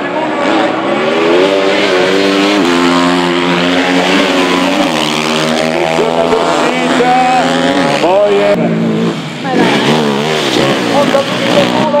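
Racing motorcycle engines revving hard, several climbs in pitch, each broken off and dropping back as the riders shift gears and accelerate around the circuit.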